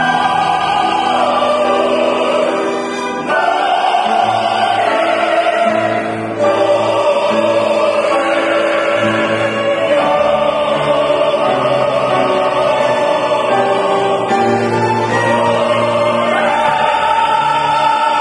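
Mixed ensemble of sopranos, tenors and baritones singing a Korean art song in operatic style, with piano and string accompaniment. The singers hold long notes that change every few seconds, with short breaths between phrases about 3 and 6 seconds in.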